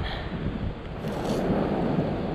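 Wind buffeting the microphone, with surf noise from the beach under it.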